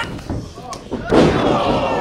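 A single loud impact of a wrestler's body landing in a tilt-a-whirl backbreaker, about a second in, booming on in the ring.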